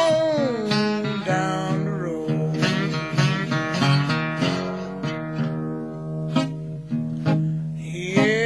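Chicago blues band recording: a sung note glides down to close a vocal line, then a guitar break with bent, wavering notes plays over the band.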